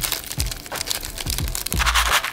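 Crinkling and crackling of a foil instant-ramen seasoning packet as its spice powder is shaken out, over background music with a steady bass beat.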